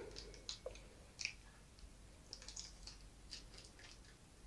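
Faint, scattered small clicks and rustles of a plastic packet of miniature sweet jars being handled and set down.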